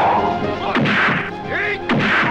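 Film-fight punch sound effects: three sharp whacks, each with a short noisy tail, over background music.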